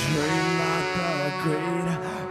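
Live band music led by a horn section of trombone, trumpet and saxophone, playing wavering melodic phrases over electric guitar.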